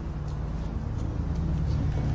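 A car engine idling: a steady low rumble that slowly grows a little louder.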